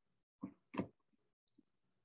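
Two faint, short clicks about a third of a second apart, from a computer mouse being clicked, picked up over a video-call microphone.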